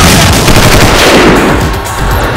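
Loud, rapid automatic gunfire, a dense run of shots as in an action film's sound effects.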